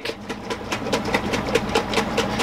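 A pint glass jar of oil-and-vinegar dressing being shaken hard to emulsify it: liquid sloshing with rapid, even knocks, several a second.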